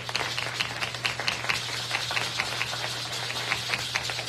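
Congregation applauding, with sharp nearby claps coming about five a second.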